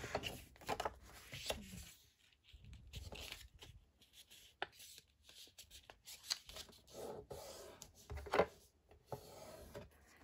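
Faint paper handling: two small sheets of patterned cardstock folded in half by hand, with light rustling and a bone folder rubbed along the creases in short strokes.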